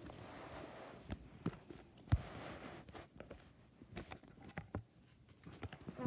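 Faint rustling and scattered light clicks of playing cards being handled: two soft swishes, in the first second and about two seconds in, with a sharper tap just after two seconds.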